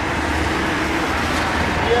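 Road traffic: a steady low rumble of a passing vehicle.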